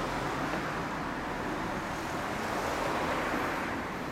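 Road traffic noise: passing vehicles' tyre and engine rush, swelling a little about three seconds in and easing off near the end.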